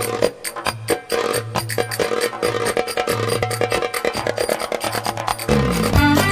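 Song intro led by a hand-played frame drum beating a fast, even rhythm over a steady drone and a pulsing bass note. Near the end a falling bass slide brings in the fuller band arrangement.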